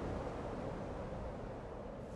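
A steady low rushing noise with no clear pitch, slowly getting quieter.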